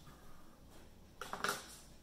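Pink-handled craft scissors handled over a tabletop: a short cluster of sharp clicks about a second and a half in.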